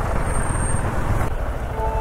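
Motorcycle engine running at low speed in stop-and-go traffic, with the noise of the surrounding vehicles. Near the end a horn starts sounding steadily.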